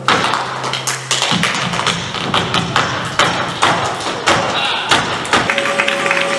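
Flamenco dancer's footwork (zapateado): shoes striking the stage floor in rapid, uneven beats, starting abruptly and giving way to held musical tones near the end.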